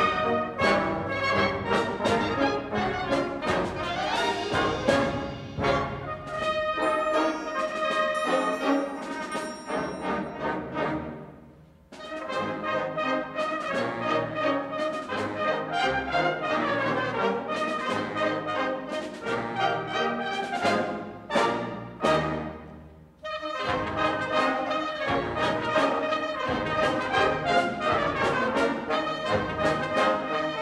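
Concert band of woodwinds and brass playing a piece, with two brief pauses, about a third and about three-quarters of the way through, each followed by the full band coming back in.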